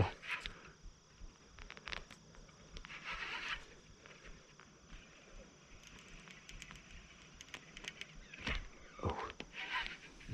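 Faint handling of a fishing rod and reel: scattered light clicks and rustles, with one short, louder sound near the end.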